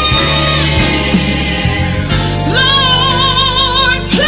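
A Christian worship song: singing voices over a steady accompaniment with sustained low notes. In the second half the voices hold one long note with a wide vibrato.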